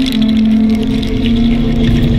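Electronic music: a sustained synthesizer drone that steps down slightly in pitch soon after the start, over a steady low bass, with scattered high clicks.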